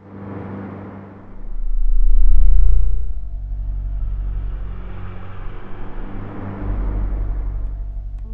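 A loud, deep rumble with a steady low drone under a hissing wash of noise in a film soundtrack. It cuts in suddenly, swells to its loudest about two seconds in, then eases back and carries on at a steady lower level.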